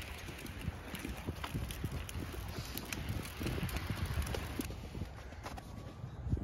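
Footsteps and stroller wheels rolling on a paved path: a run of irregular soft knocks over a low rumble of wind on the microphone.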